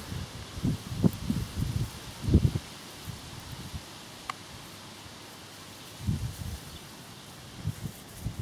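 Low, uneven rumbling bumps on the camera microphone, in a bunch over the first few seconds and again about six seconds in. Between them is a faint steady rustle, with one sharp tick near the middle.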